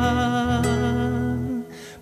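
A man's voice holds one long, steady note over two acoustic guitars in a folk song. The note and the guitars stop about a second and a half in, leaving a brief near-hush just before the next sung line.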